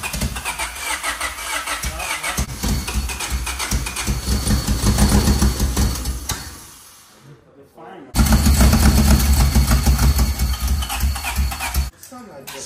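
Freshly rebuilt Honda D16Y four-cylinder engine cranking and catching roughly as it tries to start, its ignition timing off. It fades out about seven seconds in, then comes back abruptly about a second later.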